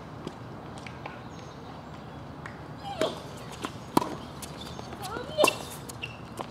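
Tennis rally on a hard court: sharp racket-on-ball strikes and ball bounces, the loudest about four and five and a half seconds in, with short shoe squeaks between them. A few faint ball bounces come in the first second.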